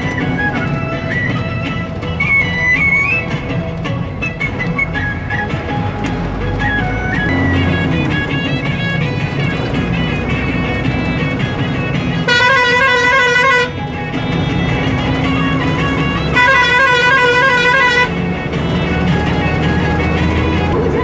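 Music plays over the low rumble of a moving vehicle, cut through twice by a warbling, multi-tone vehicle horn, each blast lasting about a second and a half, the first about twelve seconds in and the second about four seconds later.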